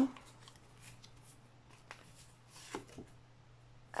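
Oracle cards being drawn and handled from a deck: faint rustles and a few light card clicks, the clearest a little before three seconds in.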